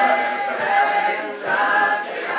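Several voices sounding together, with some notes held steady like singing.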